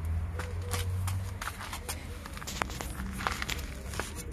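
Footsteps and scuffs on rough, debris-strewn ground, with scattered sharp clicks, over a low rumble that fades after the first second and a half.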